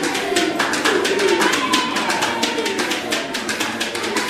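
Traditional Fulani song: singing voices over a fast, steady beat of hand claps.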